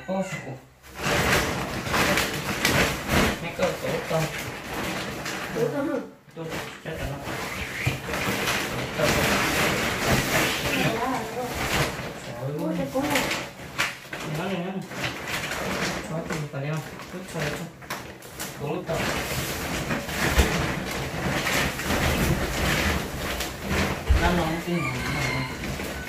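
People talking in a small room, with rustling and bumps as large woven plastic storage bags are moved and lifted.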